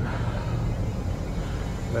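Mountain bike rolling on asphalt: a steady low rumble of knobby tyres on the road mixed with wind on the bike-mounted microphone.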